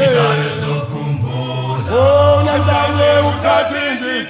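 Isicathamiya male a cappella choir singing in close harmony, a deep held bass part under the higher voices. A new sung phrase swells in about halfway through.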